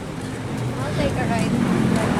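Road traffic with a vehicle engine rumbling, growing louder from about half a second in, with faint voices.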